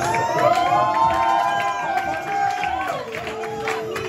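A Punjabi bhangra song plays while a crowd cheers and whoops over it. Several long held shouts overlap through the first three seconds.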